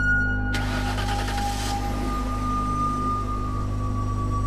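Dramatic film-score music of sustained drone tones, with a brief rushing noise swelling in about half a second in and fading out within roughly a second and a half.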